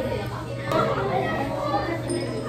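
People's voices talking, children's voices among them.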